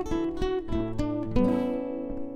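Background music on acoustic guitar: picked notes and strummed chords, with a chord left ringing and slowly fading about one and a half seconds in.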